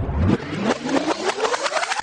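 An engine-like revving sound, its pitch rising steadily through about two seconds over a rapid run of sharp clicks. It cuts off suddenly as music comes in.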